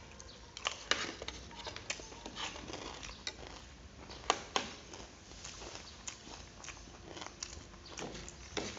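Metal spoons and forks clicking and scraping on plates as two people eat, with irregular clinks, the sharpest about four seconds in, and some chewing.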